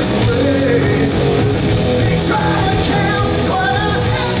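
A rock band playing live: electric guitars, bass guitar and drums.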